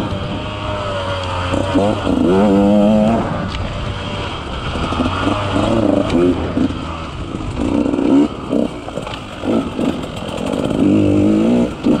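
KTM 150 XC-W two-stroke single-cylinder enduro engine being ridden, its revs rising and falling: long climbs in revs early on and about two seconds in, then a run of short throttle bursts in the second half.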